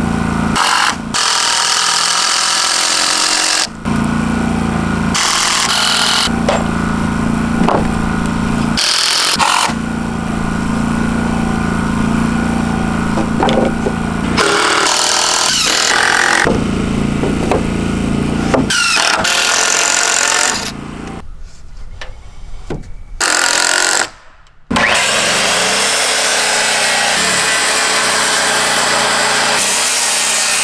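Power tools working on pressure-treated lumber in short stretches that change abruptly from one to the next; near the end a corded circular saw cuts through a board.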